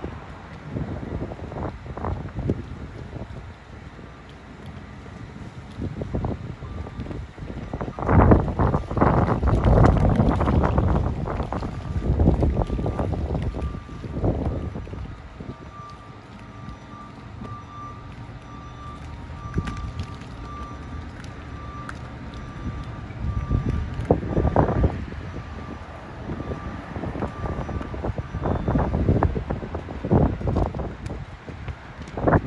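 Outdoor street noise at night: gusts of wind buffeting the microphone mixed with passing road traffic, swelling loudest about a third of the way in and again near the end.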